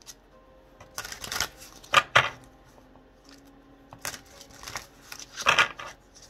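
A deck of oracle cards being shuffled by hand, in several quick swishes: about a second in, at two seconds, briefly near four seconds, and the loudest near the end.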